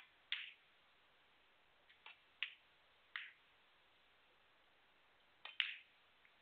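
Snooker cue striking the cue ball, followed by sharp clicks of the balls knocking against each other, about seven clicks in all. The clicks come irregularly, two near the start, three around the middle and a pair near the end, over near silence.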